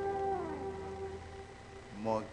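The last held note of a live band's music fading out, with one tone sliding down in pitch about half a second in.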